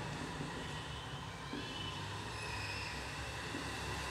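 Marker pen writing on a whiteboard, with faint squeaks of the tip on the board about halfway through, over a steady low background rumble.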